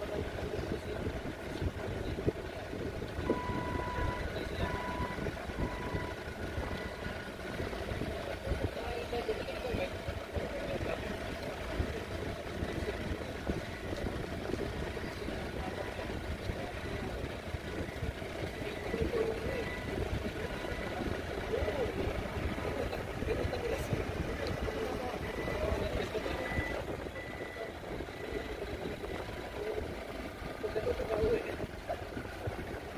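Forklift engines running steadily in a training yard, with a forklift's reversing alarm beeping about four times roughly three to six seconds in. Voices are heard now and then over the engine noise.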